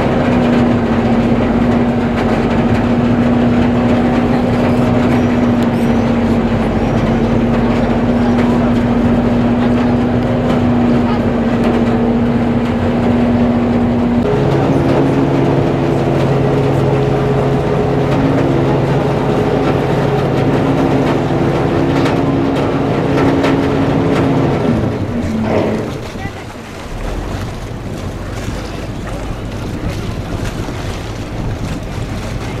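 Passenger ship's engine droning steadily as the boat cruises, heard from the deck. About halfway through the drone shifts to a lower note, and near the end it falls away with a dropping pitch, leaving a softer rush of wind and water.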